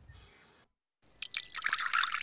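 Tea poured from a teapot spout, splashing and dripping loudly, starting about a second in after a moment of silence.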